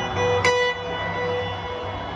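Live electric guitar picking a few sparse single notes that ring on, the sharpest one struck about half a second in, played through a stadium PA.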